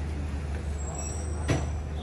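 Steady low rumble of road traffic, with a single sharp knock about one and a half seconds in.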